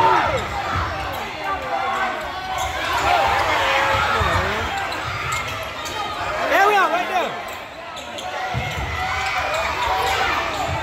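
Basketball bouncing on a hardwood gym court during live play, with players' and spectators' voices and shouts throughout.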